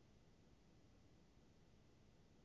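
Near silence: a faint, steady hiss of recording noise.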